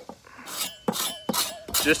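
Teeth of a handsaw scraped in about four quick strokes across a cocobolo handle block, roughing up its face so wood glue can grip.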